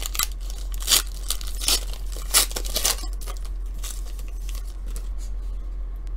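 Foil trading-card pack being torn open by hand, its wrapper crinkling. There is a run of sharp crackling tears, loudest in the first three seconds, then softer rustling.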